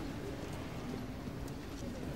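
Library reading-room ambience: a steady low murmur of distant voices with a few faint clicks.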